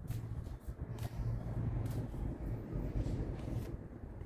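Tarot cards being shuffled by hand: soft rustling and sliding of the cards with a few light clicks, over a low rumble.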